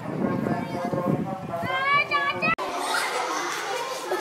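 Chatter of a crowd of schoolchildren, with one high child's voice calling out with rising and falling pitch about two seconds in. The sound cuts off abruptly at a break and gives way to a softer murmur of voices in a larger space.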